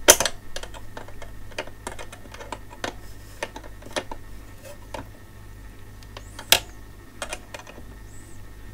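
Irregular small metal clicks and ticks of a ring spanner and needle-nose pliers working the nut of a Pomona binding post as it is tightened. The sharpest clicks come just after the start and about six and a half seconds in.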